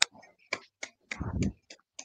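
A few scattered hand claps, sharp and irregular, heard over a video call, with a brief bit of voice a little after a second in.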